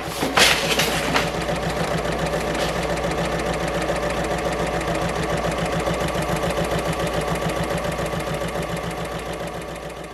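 A couple of sharp knocks in the first second, then an electric sewing machine running steadily at a fast, even stitching rhythm, fading out near the end.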